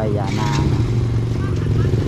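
Low, steady drone of a small motorcycle engine running nearby, heard under voices.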